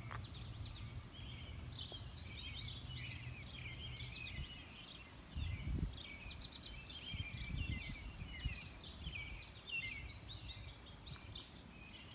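Songbirds chirping and trilling on and off throughout, quiet, over a low steady outdoor rumble.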